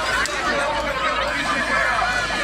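Dense crowd of many voices shouting and talking over one another during a shoving scuffle, loud and without a break.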